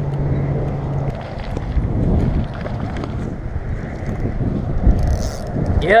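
Wind buffeting the camera microphone, an uneven low rumble, with a steady low hum that stops about a second in.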